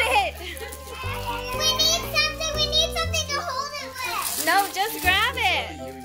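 Young children's voices chattering and exclaiming over background music with a steady low bass line.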